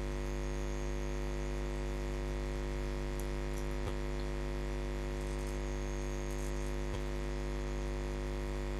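Steady electrical mains hum, a low buzz with many overtones, picked up on the recording. Two faint clicks come about four and seven seconds in.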